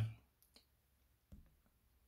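Faint clicks of small black servo angle blocks being set down and lined up by hand on a cutting mat: two light taps about half a second in, and a slightly louder one a little over a second in.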